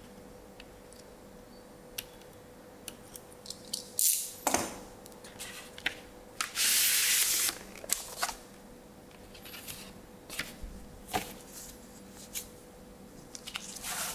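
Hands handling a vinyl LP and its packaging: scattered clicks and taps, rustling, and a steady sliding hiss lasting about a second halfway through.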